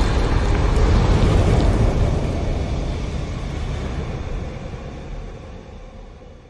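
Cinematic logo-intro sound effect: a deep rumbling tail left from a boom, fading out steadily over several seconds.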